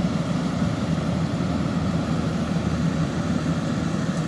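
Yanmar rice combine harvester running steadily under load as it harvests rice, a constant engine drone with a low hum.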